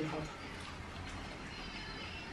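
Faint whispering, soft breathy speech without voice, as a child passes a whispered message in a game of Chinese whispers.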